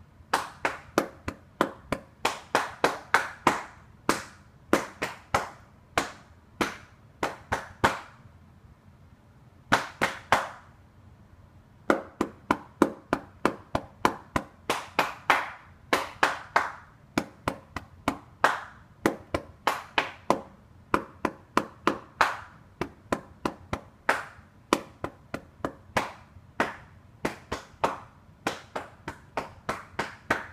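Hand claps performing a written rhythm line: sharp single claps and quick runs of faster claps in an uneven pattern, broken by two pauses of a second or two about a third of the way through.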